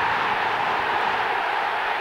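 Football stadium crowd cheering a goal just scored: a steady, dense wall of crowd noise.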